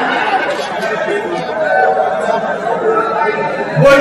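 Many voices chattering and talking over one another, with a louder voice coming in near the end.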